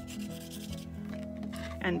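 Water brush bristles rubbing and scrubbing across watercolour cardstock as a background wash is brushed on, a soft dry scratchy rubbing.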